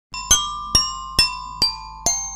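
Intro jingle of bright, glassy chime notes: four struck notes about two a second, each ringing on and fading.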